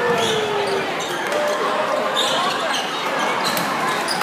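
Gym noise during a basketball game: crowd chatter and shouts in a large hall, with scattered sharp squeaks and knocks from play on the hardwood court. A drawn-out falling call fades out about a second in.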